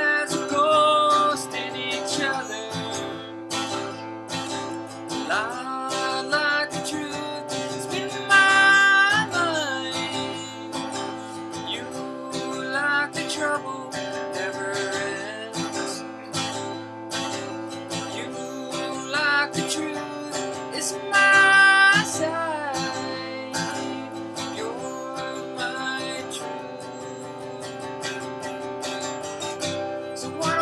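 A man singing to his own strummed acoustic guitar. The loudest moments are two long held notes in the voice, about eight seconds in and again about twenty-one seconds in.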